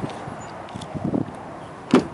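Steady background noise with a few faint knocks, then one sharp click near the end as the Dodge Durango's rear door handle is pulled and the latch releases.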